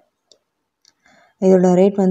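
A few faint clicks and crinkles from a plastic-wrapped talc packet being handled in near quiet, then a voice starts speaking about a second and a half in.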